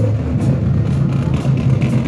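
Marching band playing, dominated by low held notes from sousaphones passing close by, with a few light drum strikes underneath.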